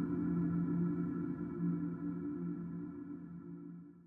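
Closing ambient music: a sustained low chord that holds steady and then fades out near the end.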